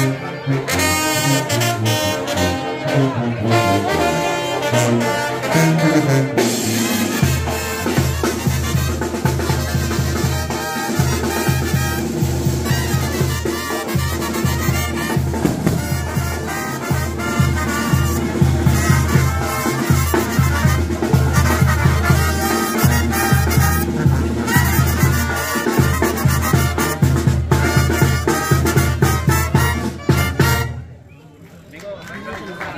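Mexican brass banda playing live, with trumpets, trombones, a sousaphone and drums. About seven seconds in, the sousaphone's bass line and a steady beat come in under the horns.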